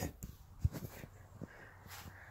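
Handling noise from a phone camera being picked up and carried: a few light clicks and knocks, with one low thump just over half a second in.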